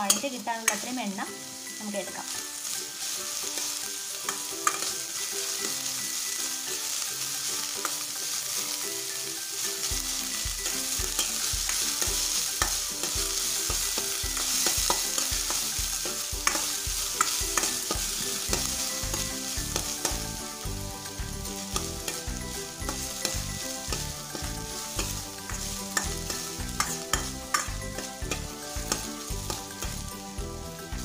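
Chopped ginger and chillies sizzling steadily in hot oil in a stainless steel wok while a metal spatula stirs them, scraping and tapping against the pan. This is the ginger being sautéed in oil, the first stage of making injippuli.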